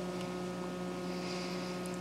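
Steady electrical mains hum: a low tone with a stack of higher overtones, unchanging throughout.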